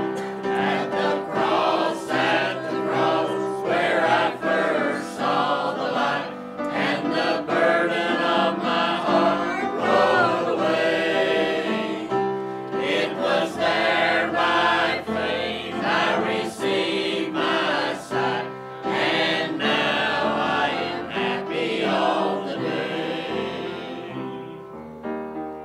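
Mixed church choir of men and women singing a hymn together, fading near the end.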